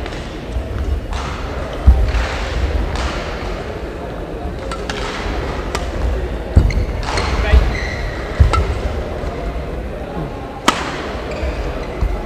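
Badminton rally: sharp hits of rackets on the shuttlecock, spaced about a second or more apart, with thuds of players' feet on the court floor, over a steady hall background.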